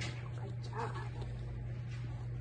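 A dog makes one short, faint vocal sound a little under a second in, over a steady low hum.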